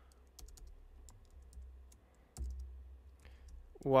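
Typing on a computer keyboard: scattered, irregular key clicks, with one duller thump about two and a half seconds in.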